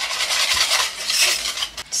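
Wire whisk stirring custard in a stainless steel saucepan, the wires scraping and rattling against the pan in a continuous rubbing noise.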